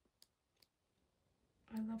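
A photo book's stiff glossy pages being turned by hand, giving two faint clicks in the first second. A woman starts speaking near the end.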